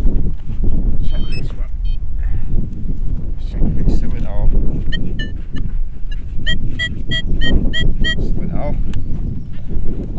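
A metal detector beeping in a quick run of short, evenly spaced high tones, about three a second, for roughly three seconds from about halfway in. This is its target response as the coil passes over the freshly dug hole. Wind buffets the microphone with a heavy low rumble throughout.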